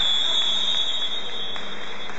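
Basketball scoreboard buzzer sounding one long, steady high-pitched tone that cuts off about one and a half seconds in. It follows a countdown, which makes it the end-of-period horn.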